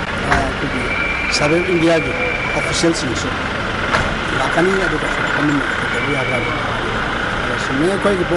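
A man speaking in Manipuri, in phrases with short pauses, over a steady background hum.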